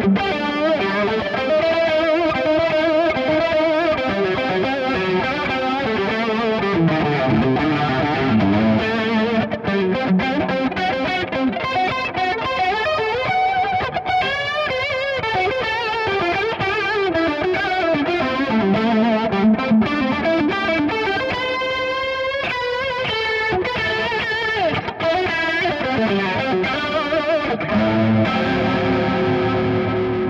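Electric guitar, a PRS Custom 24 with 59/09 pickups, played continuously through a Valeton CH-10 analog chorus pedal (a Boss CE-2-style design) with rate and depth at full, into a Victory VX Kraken amp. The notes and chords waver steadily in pitch from the chorus.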